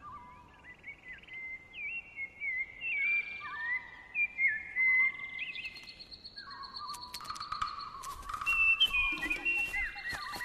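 Soundtrack bird calls: many short chirps and rising and falling whistles overlap and grow busier. After about seven seconds a steady high tone and clicking percussion join them as music starts to build.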